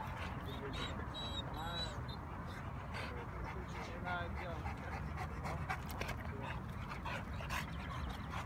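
Dogs vocalizing during play: a few short whines, over a steady low rumble.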